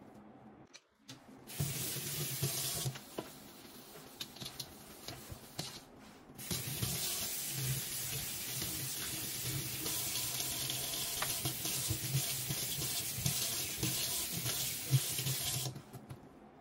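Kitchen tap water running into a stainless steel sink. It runs briefly about a second and a half in, and a sponge scrubs the soapy steel while the tap is off. From about six seconds in, the tap runs steadily while the suds are rinsed away, and it shuts off suddenly near the end.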